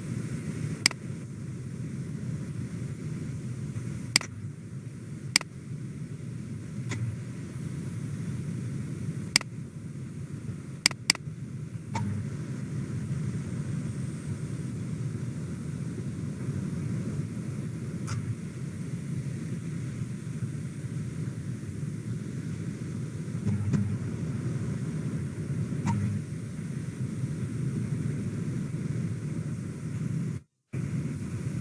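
About ten sharp single clicks of computer keys and a mouse, two of them in a quick pair and most in the first twelve seconds, over a steady low rumble of background noise.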